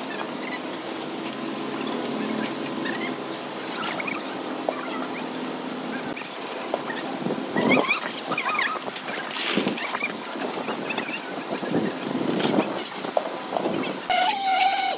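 Wet concrete being spread by hand, with shovels and rakes scraping and slopping through it, against scattered knocks. A few short squeaks come about halfway through.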